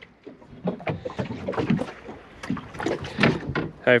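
Irregular light knocks and clatter aboard a small boat sitting on calm water, several a second with no engine running.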